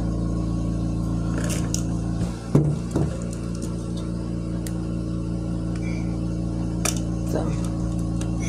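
Steady background music, with a few sharp clicks and a heavier knock about two and a half seconds in as a lighter is worked and glass candle jars are handled.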